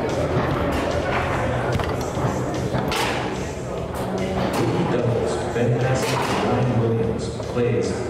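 Foosball play: the ball and rods knocking sharply on the table, several distinct knocks, over background music and chatter in a large hall.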